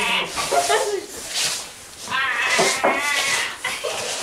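High-pitched wordless human vocalizing: several short voiced calls whose pitch wavers and bends, with a bleat-like quaver.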